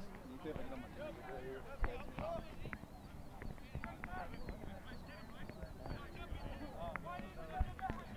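Faint, overlapping voices of rugby players and touchline spectators calling and chatting on an open field, with a brief knock about two seconds in.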